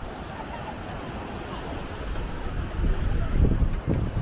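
Wind buffeting the camera microphone over the steady wash of surf breaking on a sandy beach; the gusts grow stronger near the end.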